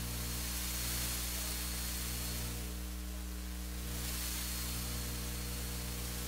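Steady low electrical mains hum and hiss from a recording or microphone system, with no speech on top of it.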